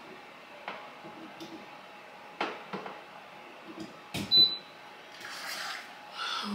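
Light knocks and clicks of things being moved and handled on a kitchen counter, the loudest a knock about four seconds in, with a short high beep as the air fryer is switched on.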